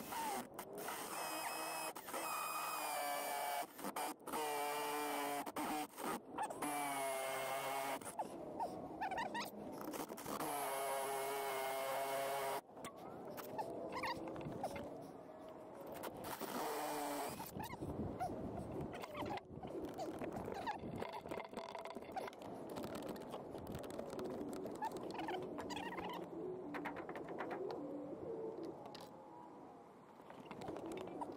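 A Milwaukee M18 cordless power tool runs in several bursts of a couple of seconds each, each with a wavering, squealing pitched whine, during roughly the first dozen seconds. Quieter scraping and rustling follow.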